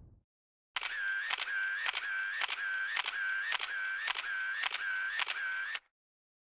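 Camera shutter sound effect firing in a rapid burst, about two sharp clicks a second with a short whir after each, about ten frames in all, stopping abruptly near the end.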